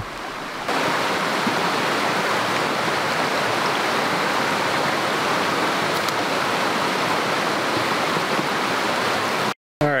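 A shallow, rocky mountain stream running and rushing steadily over stones, a constant water noise that gets louder less than a second in. It breaks off for a moment just before the end.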